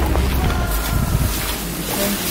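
Wind buffeting the camera microphone outdoors, a low rumble that eases about a third of the way in.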